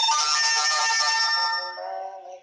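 Devotional bhajan music with a loud bell-like metallic chime struck once. It rings with many steady overtones and fades after about a second and a half, as the sung melody comes back in.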